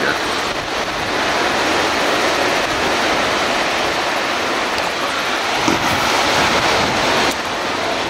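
Surf breaking along an ocean beach, a steady even rush, mixed with wind on the microphone. The noise drops a little near the end.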